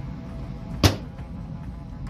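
The steel lid of a pellet grill shutting, one sharp clang a little under a second in, over steady low background noise.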